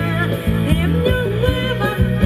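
Thai ramwong dance music from a live band over loudspeakers, with a steady beat about twice a second, a bass line and a melody over it.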